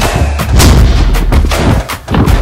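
Loud montage soundtrack of deep booming bass hits and sharp impact effects coming in quick succession, with a brief drop near the end.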